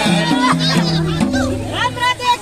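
Madal, the Nepali two-headed hand drum, playing folk music, with people's voices over it.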